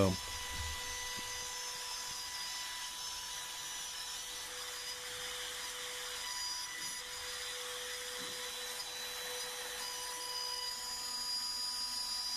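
Makita compact router running with a steady high whine as its bit cuts a shallow recess freehand into a pine board.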